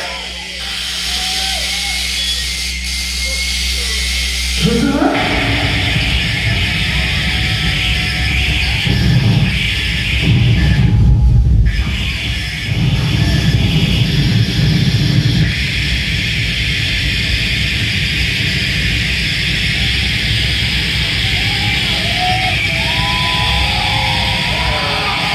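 Harsh noise electronics played live through a hall PA. A low steady drone holds for about five seconds, then a dense wall of noise breaks in and carries on. The noise briefly thins in its upper range about eleven seconds in.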